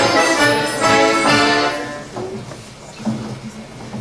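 Accordion and guitars playing a lively folk tune that ends about two seconds in. The rest is much quieter.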